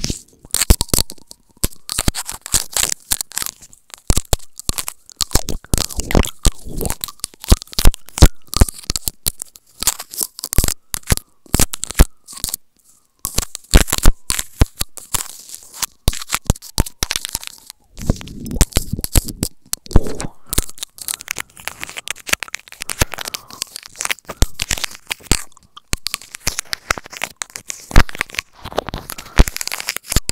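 Teeth nibbling and biting on a small plastic pick held at the lips, very close to the microphone: dense, irregular crunchy clicks and crackles with a few short pauses.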